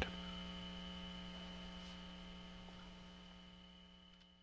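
Steady low electrical hum with a faint high whine over it, slowly fading out.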